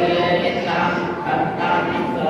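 A group of voices chanting together on long held pitches that shift every half second or so.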